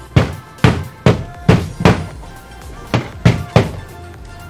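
Hammering on wood: five sharp knocks about two a second, a pause of about a second, then three quicker knocks, over quiet background music.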